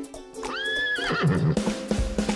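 Horse whinny sound effect over light plucked-string music: one high call about half a second in that holds, then ends in a wavering trill and drops away. A fuller band with a bass line comes in about a second and a half in.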